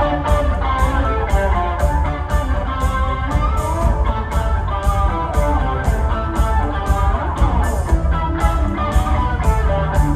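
Live rock band playing an instrumental passage: an electric guitar plays a melodic lead over heavy bass and a steady drumbeat.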